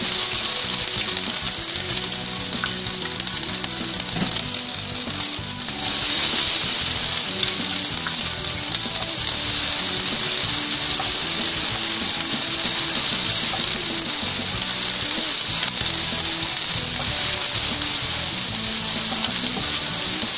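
Diced bell peppers sizzling in hot oil in a non-stick frying pan: a steady frying hiss that eases briefly about four seconds in, then comes back stronger. Background music plays under it.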